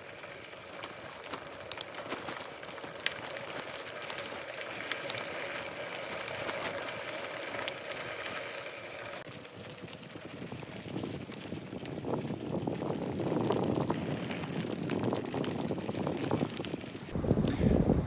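Bicycle rolling down a gravel track: steady tyre noise with a faint hum and scattered clicks of loose stones. About halfway through the sound changes to a rougher, louder rushing noise.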